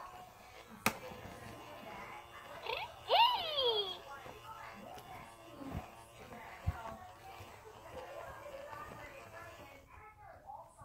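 Baby doll's built-in speaker giving two short, high-pitched falling baby sounds about three seconds in, then a faint tune. There is a sharp click from handling about a second in.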